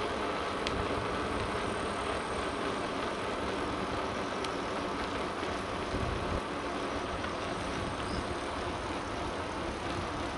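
Steady rushing wind on the microphone mixed with the rolling hum of bicycle tyres on a paved path, with a few faint clicks.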